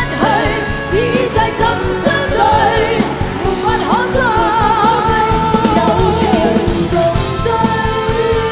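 Two female singers performing a Cantonese pop ballad live with a rock band, singing runs with wide vibrato and then holding long notes from about four seconds in, over drums and keyboards.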